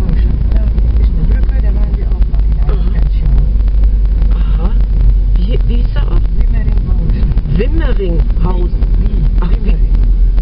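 A car driving, heard from inside the cabin: a steady, loud low rumble of engine, road and wind noise. Indistinct voices come in about halfway through.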